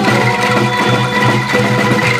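Live angklung orchestra playing a Sundanese pop song: shaken bamboo angklung and gambang mallet notes over bass and drums, in a dense, rhythmic ensemble texture.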